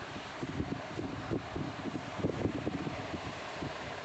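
Rustling and handling noise close to a phone's microphone, with irregular soft scuffs and knocks as the phone and bedding are moved, over a steady hiss.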